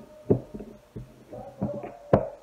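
A few soft knocks and thumps from handling a pumpkin piece while pricking it with a bamboo skewer over a wooden cutting board. The loudest knock comes about a third of a second in.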